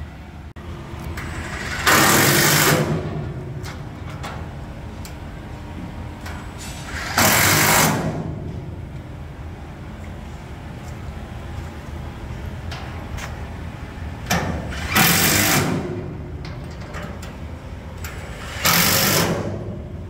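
Cordless impact wrench firing in four short bursts of about a second each, running down the stainless bolts and lock nuts on the aluminum braces.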